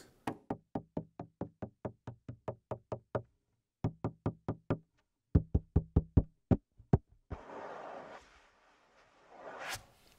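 Fingers tapping the textured polycarbonate playing surface of an ATV aFrame electronic frame drum, heard raw through its two audio pickups with no effects processing: quick runs of short, dry taps, several a second, changing in tone as they strike different spots. Near the end the hand rubs the surface for about a second, giving a soft steady hiss.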